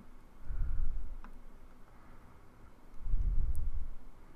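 A few faint computer-mouse clicks while browsing a parts library, with two low, muffled rumbles, about half a second in and again from about three seconds in.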